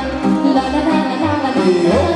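Live amplified Romanian folk dance music from a band, with a woman singing into a microphone over a steady bass beat.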